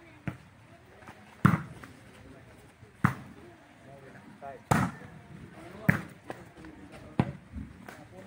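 A volleyball being hit back and forth by hand in a rally: a series of sharp slaps about every second and a half.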